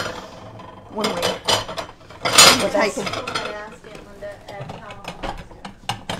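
Ceramic saucers clattering and clinking as they are taken out of a kitchen cupboard and handled, with a run of short clicks near the end.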